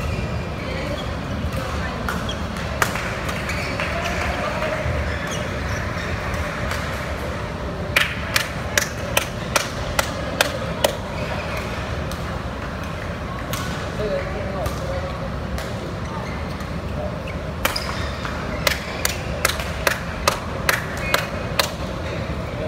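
Badminton rackets hitting a shuttlecock: two quick runs of sharp cracks, two to three a second, over the steady murmur of voices in a sports hall.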